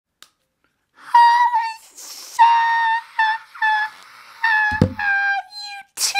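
A high-pitched tune in short, slightly bending notes, voiced or whistled in a sing-song way, with a brief breathy hiss between the first notes. A single dull thump comes a little before five seconds.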